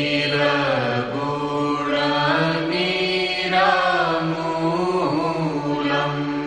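A traditional Sanskrit homage to a revered teacher or sage, chanted by one voice in long, gliding held notes over a steady low drone.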